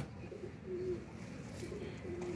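Domestic pigeons cooing faintly in a few short, low coos.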